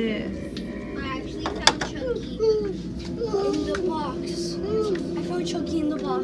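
Indistinct voices, including a child's, talking in a shop, with one sharp click about a second and a half in.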